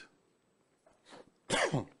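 A man coughs once, a short cough about one and a half seconds in.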